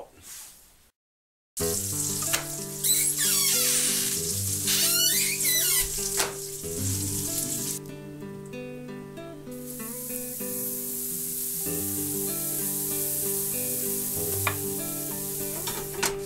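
Waffle batter sizzling in a hot 1883 Griswold cast iron waffle iron on a gas stove, with background music throughout. The sizzle is loudest from about two to six seconds in and again through the second half.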